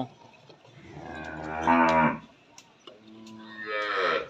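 Cattle mooing: one long moo about a second in that grows louder toward its end, and a second moo starting near the end that rises in pitch.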